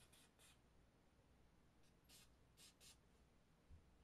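Near silence, with a few faint, brief scratchy sounds of hands working on a disassembled pistol slide.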